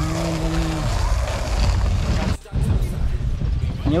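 Steady low rumbling noise on the camera microphone, with a short hummed voice in the first second; the sound cuts out briefly a little past halfway.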